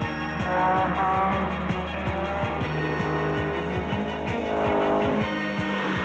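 Rock music soundtrack with the sound of 1970s rally cars driven hard on gravel stages mixed in, engines running at speed with a swell of car noise about four to five seconds in.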